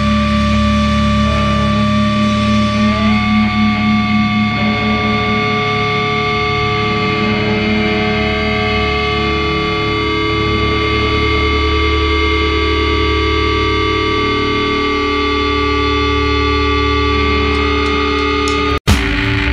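Distorted electric guitar holding long, ringing notes through effects, with no drum beat. The notes step up in pitch about three seconds in and then hold steady.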